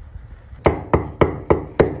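Knuckles knocking on a heavy wooden front door: five quick, evenly spaced raps, about three a second, starting a little way in.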